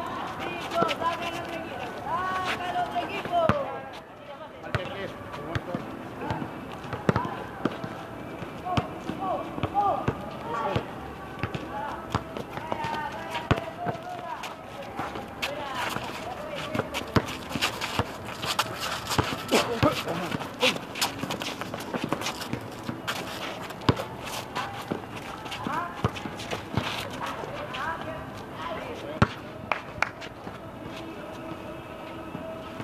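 Outdoor pickup basketball game: players' voices calling out across the court, with the ball repeatedly bouncing on the pavement and footsteps of running players.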